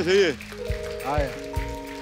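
A man sings the end of a comic line on a held, wavering note that stops about a third of a second in. Steady held chords from the band follow, with one short sung swoop about a second in.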